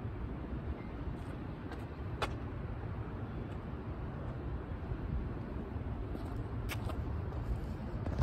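Steady low outdoor background rumble with a few sharp clicks, the loudest about two seconds in and a couple more late on.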